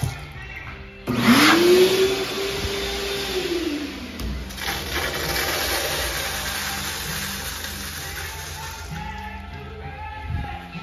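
Kohler Dexter urinal flushing: a sudden rush of water about a second in, with a whistling tone that rises, holds for a couple of seconds and drops away, then water washing down the bowl and fading near the end.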